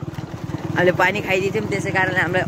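A motorcycle engine running steadily under a boy's talking, with wind on the microphone. The talking starts a little under a second in.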